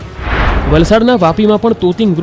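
A booming whoosh lasting about half a second, typical of a news-bulletin transition sound effect. A narrating voice follows from about half a second in.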